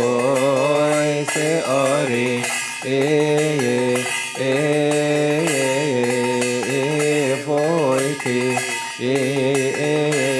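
A male voice chants a Coptic hymn in long, held, melismatic notes with vibrato, pausing briefly between phrases. A light metallic ringing sounds alongside, typical of the small bells on a swung censer or of church cymbals.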